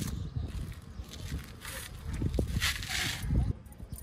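Clothing and car seat rustling with soft low thumps as a person climbs into a car's driver seat, with two short brushing rustles about halfway and near the end.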